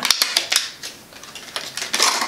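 A rapid run of small plastic clicks and taps from handling a cosmetic serum bottle and its cap, bunched near the start and again near the end.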